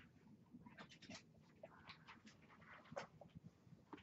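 Faint marker strokes on a whiteboard as a circuit diagram is drawn: a series of short scratchy strokes, the loudest about three seconds in.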